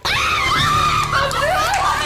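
A woman shrieking in one long, wavering high-pitched cry that cuts in suddenly, over a faint steady low hum.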